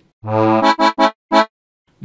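Software accordion patch played from a keyboard: an A chord held for about half a second, followed by four short, detached chord stabs.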